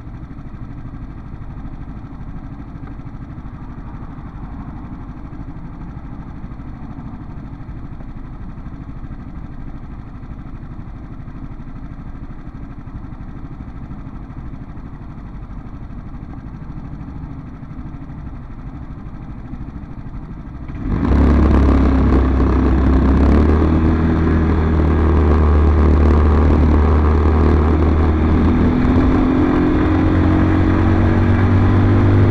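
BMS Prestige 150cc scooter's single-cylinder GY6 four-stroke engine heard through its dash camera: running steadily and fairly quietly while the scooter stands at a stop. About 21 seconds in, the sound steps up sharply to a much louder engine under throttle as the scooter rides, with the pitch rising near the end.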